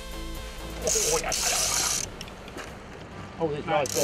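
Electronic background music fades out in the first half-second. Then come two spells of hiss, about a second in and again near the end, with brief voice sounds.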